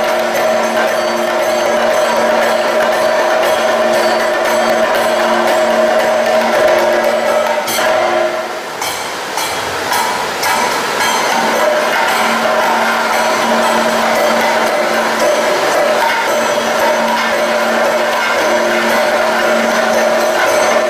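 Kathakali accompaniment: a drum ensemble plays steady strokes with cymbal-like jingling over held tones. The music thins briefly a little before halfway, then picks up again.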